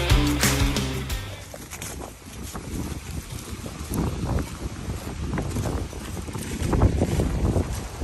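Background music that fades out about a second in, then footsteps on dry fallen leaves: irregular soft crackles and rustles.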